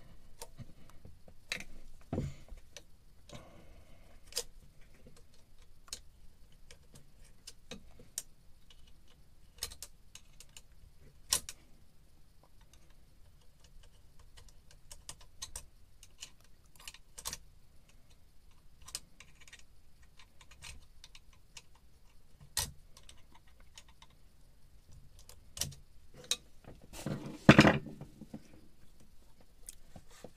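Irregular sharp metal clicks and ticks of a screwdriver working the hose clamps on a marine diesel's exhaust hoses, loosening them to free the hoses, with a louder clatter of tool on metal near the end.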